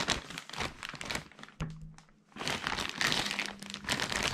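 Plastic packaging crinkling and rustling as hands handle it, with a brief lull about two seconds in.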